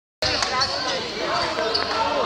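A basketball bouncing on the court a couple of times, with voices of players and spectators around it.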